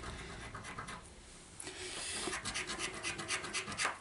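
A paper scratchcard's scratch-off panel being scraped off by hand. It is faint at first, then from about one and a half seconds in comes a run of quick, evenly repeated scratching strokes.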